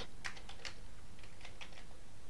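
Quiet, irregular keystrokes on a Commodore 128 keyboard as the LIST command is typed in.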